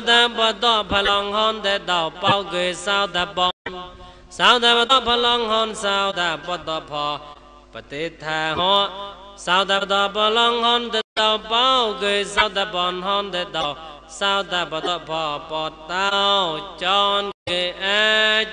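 A man chanting Buddhist Pali verses in a drawn-out, melodic recitation with long, wavering notes, broken by three brief dropouts.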